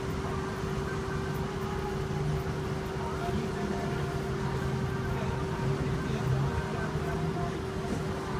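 A steady mechanical hum with one constant mid-pitched tone over a low rumble, with faint, indistinct voices in the background.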